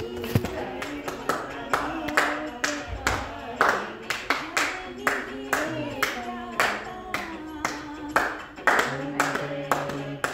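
Hands clapping in a steady rhythm, about two claps a second, in time with a devotional aarti song with singing.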